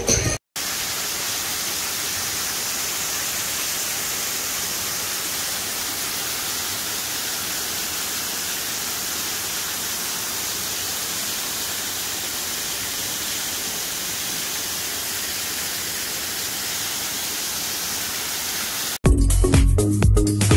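Small garden waterfall splashing into a pond: a steady, even rush of falling water. Music plays for a moment at the very start and comes back in about a second before the end.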